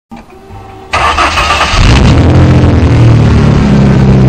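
Off-road race truck's engine starting about a second in, loud at once. Its pitch wavers as it catches, then it settles into a steady run.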